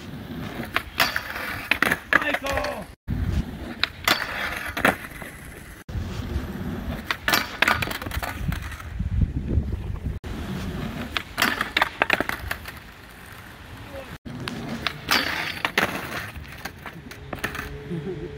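Skateboard wheels rolling on concrete with sharp clacks and slaps of the board hitting the ramp and ground, in several short takes cut one after another. The last take ends in a fall onto the concrete.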